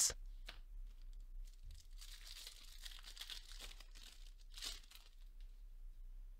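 Faint crinkling and rustling of a torn plastic trading-card pack wrapper and cards being handled, with a sharper crinkle near the end.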